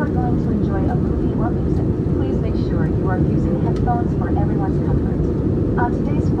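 Steady cabin rumble of an Airbus A319-132's IAE V2500 engines and airflow, heard inside the cabin from a seat over the wing during the climb after takeoff. A faint flight-attendant announcement runs over it through the PA.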